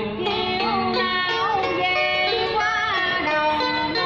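Live singing of a Vietnamese song in an ornamented, sliding style, with notes held and bent, accompanied by a plucked guitar.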